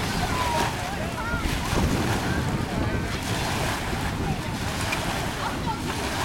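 Small waves breaking and washing up on a sandy shore, with wind rumbling steadily on the microphone.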